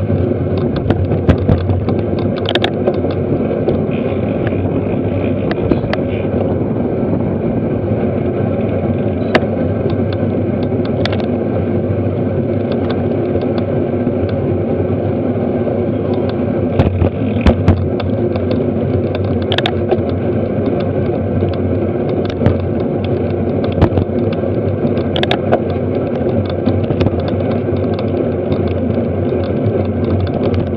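Steady wind and road rumble on a camera riding in a bunch of racing road bikes, with scattered sharp clicks and knocks from the bikes.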